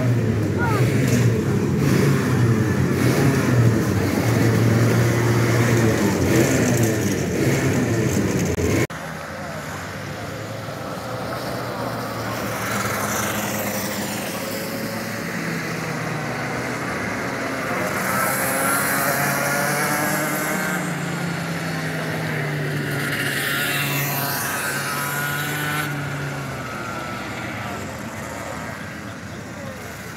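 Small kart engine running loudly and steadily in the pit area. About nine seconds in it cuts off abruptly to kart engines out on the track, quieter, their pitch rising and falling as the karts accelerate and slow through the corners.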